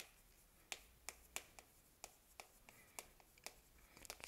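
Chalk writing on a blackboard: a string of faint, sharp taps and clicks, about ten in the few seconds, as the chalk strikes and strokes the board.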